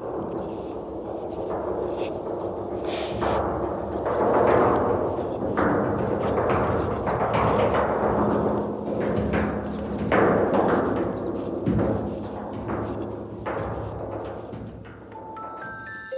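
Resonant struck percussion: deep booming strikes at irregular intervals, each ringing on, with the sound fading away near the end.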